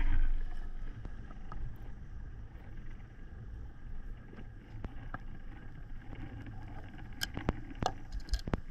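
Muffled underwater ambience: a low steady rumble of water with a few sharp clicks, which come more often near the end.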